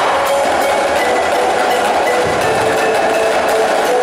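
A line of marching snare drums playing dense, rapid strokes together, with a faint steady tone underneath.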